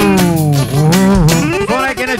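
Loud live band music: a lead melody with a long downward pitch slide followed by bending turns, over a plucked-string accompaniment.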